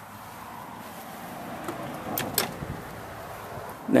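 Golf cart brake pedal with its parking-brake latch, giving two sharp clicks close together about two seconds in as the pedal moves, over steady outdoor background noise.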